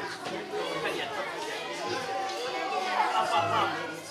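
Indistinct chatter of many children and adults talking over one another, with no single clear speaker.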